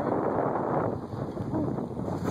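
Wind rushing over a phone's microphone while riding a bicycle, a steady, rumbling noise.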